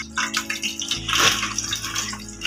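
Oil sizzling and crackling in a frying pan, a steady hiss full of small irregular pops.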